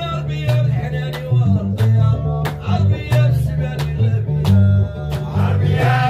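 Gnawa music: a guembri (three-string bass lute) plucking a repeating deep bass line, with rhythmic handclaps several times a second and male singing over it.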